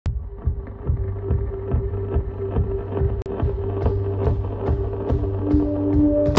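Background music: a steady beat of a little over two strokes a second over a held tone, with a high ticking that grows stronger from about halfway in.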